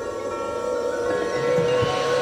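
Marching band playing a held, swelling chord with one wavering sustained note, over ringing mallet percussion from the front ensemble; the chord grows louder and fuller in the low end near the end.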